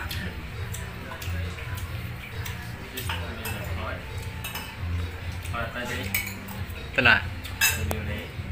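Spoon clinking and scraping on a plate while eating: a string of light clicks, with a couple of louder clinks about seven seconds in, over a low steady hum.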